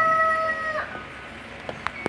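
Rooster crowing: the long, steady held end of its crow, which breaks off a little under a second in.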